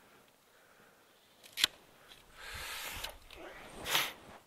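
Hand pruning secateurs cutting a rose cane: one sharp snip about one and a half seconds in, then a short rustle and a second sharp click near the end.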